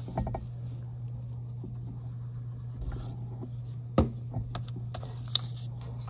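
Sheets of paper being handled on a table: faint rustling and sliding, with a few sharp taps, the loudest about four seconds in and another just after five seconds.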